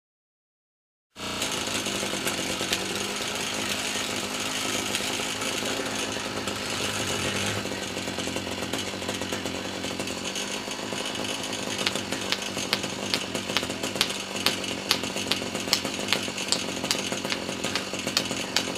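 Small two-stroke string trimmer engine starting up about a second in and running steadily, with a spark plug test light in its ignition lead. From about twelve seconds, sharp ticks come in over the engine, more and more often.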